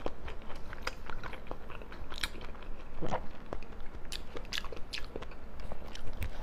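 Close-miked chewing of raw salmon topped with fish roe, a run of short wet mouth clicks and smacks.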